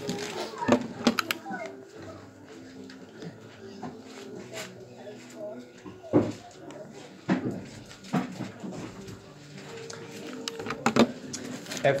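Bible pages being turned and handled near a lectern microphone, a few sharp rustles and knocks, over faint murmuring voices in the room.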